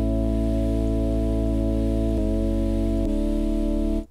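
Held synthesizer chords over a deep bass note, playing back from a future house track in progress; the chord changes about halfway through and again near the end, then stops abruptly.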